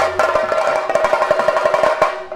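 Theyyam ritual percussion: drums beaten fast with sticks, with cymbal-like strokes over a steady held tone. The deep low end thins out about half a second in.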